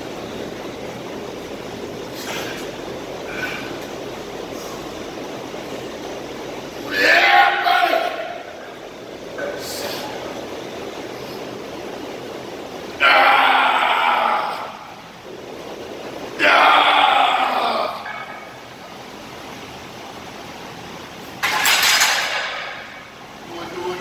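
A man grunting and blowing out hard as he works through heavy barbell back squats: four loud straining bursts, the first about seven seconds in and the rest three to five seconds apart, over a steady room hum.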